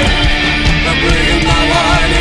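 Gothic rock instrumental passage: electric guitar and drums with no vocals, the lead line wavering in pitch.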